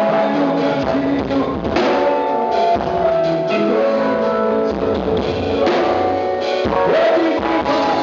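Live pagode baiano band music with electric bass, cavaquinho, drum kit and percussion playing a steady dance groove.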